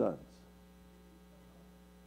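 A man's voice finishes a word, then a pause holds only a faint, steady electrical mains hum.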